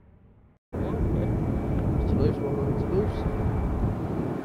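Steady low rumble of Airbus A330 jet engines outdoors, with faint voices in the background, cutting in abruptly about a second in after the faint tail of music.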